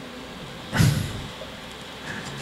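Quiet room tone in a pause between speech, with one short breathy puff of noise about three-quarters of a second in that fades quickly.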